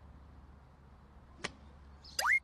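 A faint low hum with a single short, sharp click about one and a half seconds in.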